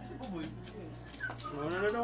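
A voice making two drawn-out calls with sliding pitch, a short falling one and then a longer, louder one that rises and falls.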